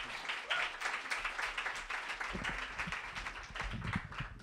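Audience applauding, the clapping thinning toward the end, with low bumps in the second half.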